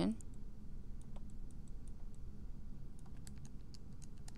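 Faint, scattered light clicks of a stylus tapping and writing on a tablet screen, more of them near the end, over a low steady background hum.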